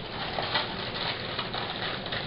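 Plastic wrapper of a sleeve of cookies crinkling as it is handled and picked open, a run of irregular crackles.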